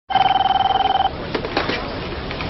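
Desk telephone ringing with a single warbling electronic ring that stops about a second in. A few faint knocks follow.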